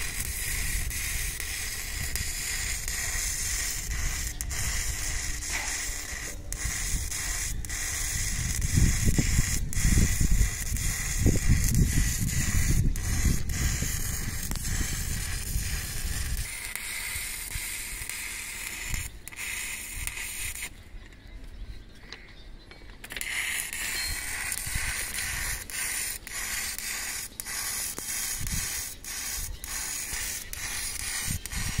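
Electric arc welding on a steel rail: a steady crackling hiss from the welding arc as weld metal is laid to build up a damaged rail edge. The arc breaks off for about two seconds past the middle, then strikes again, and a low rumble runs under it for several seconds near the start.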